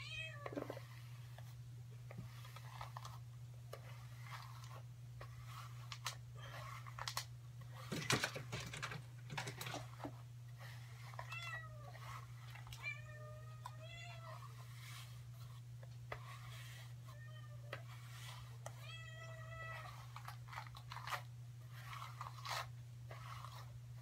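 A cat meowing several times, short meows that rise and fall, through the second half, over a steady low hum. Near the middle comes a brief burst of rustling as hair is handled close to the microphone.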